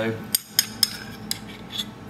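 A metal spoon clinking against a small stainless-steel pot as shrimps and dressing are scooped out: about five short, light clinks spread over two seconds.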